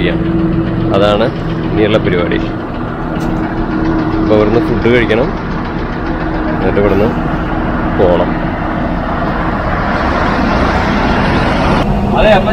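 Ashok Leyland tourist bus's diesel engine idling with a steady hum, with snatches of voices nearby. A broad rushing noise swells near the end.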